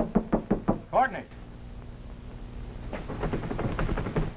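Knuckles rapping on an office door: a quick run of about five knocks, then a man's short call about a second in, then another run of knocks near the end.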